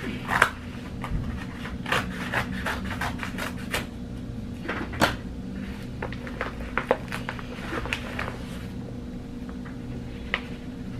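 Cardboard mail package being cut open and handled: a run of irregular clicks, crinkles and knocks, over a steady low hum.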